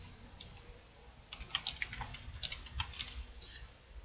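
Computer keyboard typing: a few scattered keystrokes, then a quick run of key clicks from about a second in.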